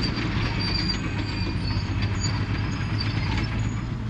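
Caterpillar 953C track loader working: its diesel engine runs steadily while its steel tracks give off short, high-pitched squeaks and light clanking.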